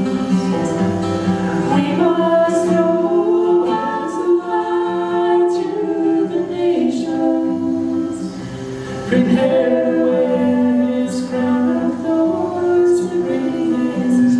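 A man and a young woman singing a slow worship song together in long held notes, over strummed acoustic guitar. The sound dips briefly about eight seconds in, then the singing resumes.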